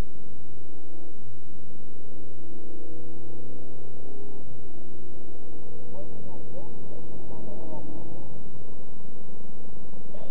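Car engine and road noise heard from inside the cabin while driving on a highway. The engine note rises slowly as the car picks up speed and steps about four and a half seconds in.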